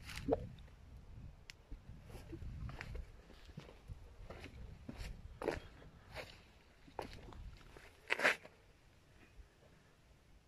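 Faint, irregular footsteps and scuffs on stone paving, with a few sharper crunches, the loudest near the two-thirds mark.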